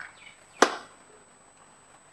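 A single sharp click a little over half a second in, dying away quickly, against faint room tone.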